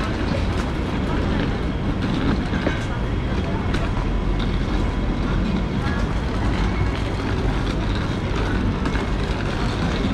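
Busy city street ambience: scattered chatter of passers-by over a steady low rumble of traffic.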